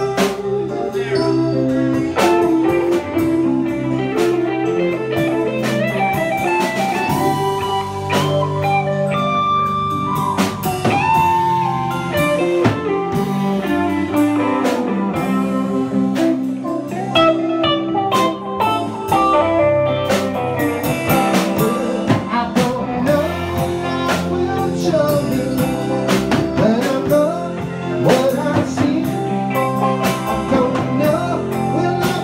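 Live band playing an instrumental stretch of a blues-tinged song: guitar lines with bent and sliding notes over bass and a drum kit.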